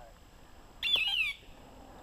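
A short bird-like squawk falling in pitch, heard once about a second in.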